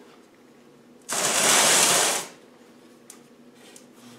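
A harsh scraping noise about a second long as the aluminium LT77 gearbox casing is shifted into place on its steel support frame, followed by a couple of faint clicks.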